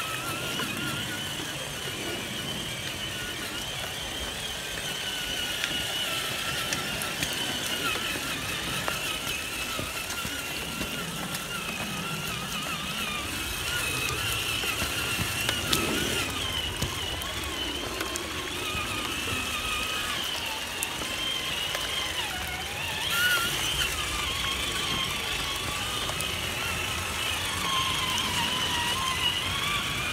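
Electric motors and gearing of scale RC crawler trucks whining, the pitch drifting up and down with the throttle as they crawl through a muddy stream. There is a brief louder burst about three-quarters of the way through.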